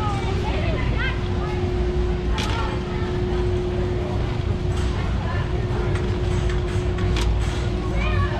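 Warehouse-store ambience: a shopping cart rolling over a concrete floor with a low rumble, under a steady hum, with faint chatter from other shoppers and a few light clicks.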